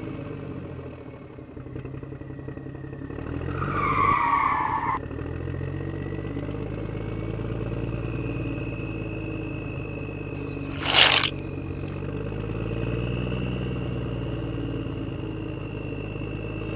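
Vehicle engine sound effect running steadily, with a short squeal about four seconds in and a brief loud hiss around eleven seconds in.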